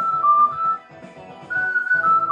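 Focalink soprano ocarina in D playing a melody over a karaoke backing track: a run of short notes, a brief pause about a second in, then a new phrase opening on a long high note.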